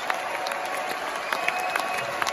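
A large theatre audience applauding and cheering at a rock band's curtain call. The steady wash of clapping has sharp individual claps close by.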